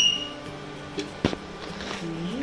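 A steel spoon clinks sharply once against a kadhai about a second in, with a lighter click just before, as oil is spooned into the pan, over a steady low hum from the induction cooktop.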